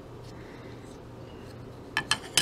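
Quiet room tone with a steady low hum, then a sharp click right at the end.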